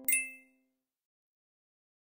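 A single short, bright ding sound effect just after the start, over the fading last note of a short musical jingle; both die away within the first second.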